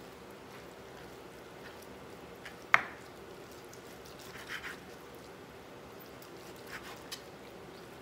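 Chef's knife slicing raw pork belly on a wooden cutting board: soft cuts and scrapes of the blade, with one sharp knock about three seconds in.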